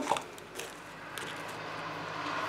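Faint handling noise: soft rustling and a few light clicks as small toiletry items and a fabric pouch are handled.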